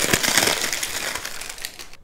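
Clear plastic wrapping crinkling as it is pulled off a round LED spotlight. The crackle is densest at first and thins out near the end.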